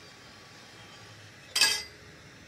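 A brass cartridge case drops off the annealer's turning wheel into a stainless steel catch tray: one sharp metallic clink with a short ring, about one and a half seconds in.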